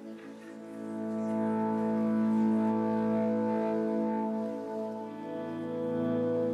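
A live worship band opening a song with sustained held chords that swell in over the first couple of seconds, then move to a new chord about five seconds in.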